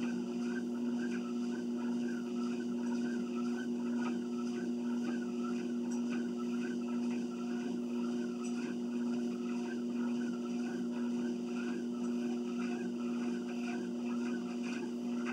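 Treadmill running with a steady motor hum, with a rhythmic pattern about twice a second from a person walking on the moving belt.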